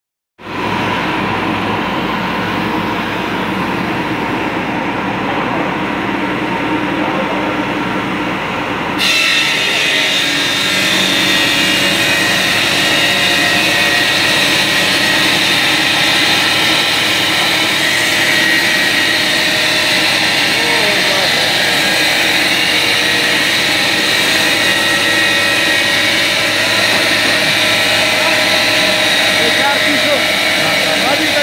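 Electric stone-cutting bridge saw with a water-cooled circular blade running steadily; about nine seconds in, the blade bites into the stone strip and a loud, high-pitched grinding hiss sets in and holds steady as the cut goes on.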